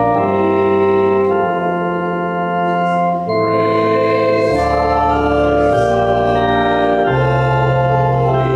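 Organ playing slow, sustained chords, the bass note changing every second or so: offertory music while the collection is taken.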